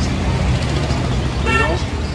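Steady low rumble of road traffic, with a short voice-like sound about one and a half seconds in.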